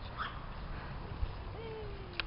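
A puppy gives one thin whine that glides slowly down in pitch, starting about three quarters of the way in, over a low background rumble.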